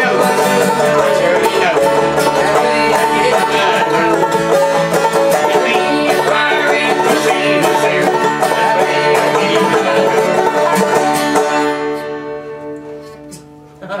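Banjo and acoustic guitar playing a bluegrass tune together; the playing stops about twelve seconds in and the last notes ring out and fade.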